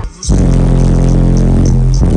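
A semi truck's subwoofer sound system playing one held, very loud deep bass note that starts about a quarter second in, hard enough to shake the windshield.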